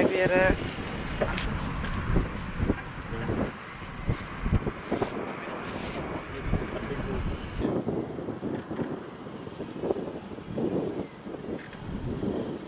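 Wind buffeting the microphone in gusts, with indistinct voices and a few short knocks.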